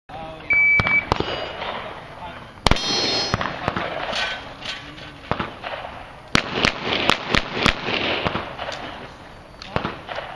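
A shot timer beeps once, about half a second in. About a dozen pistol shots follow at irregular spacing, some in quick pairs and strings, as in a practical shooting stage. After at least one shot comes a brief metallic ring, typical of a hit steel plate.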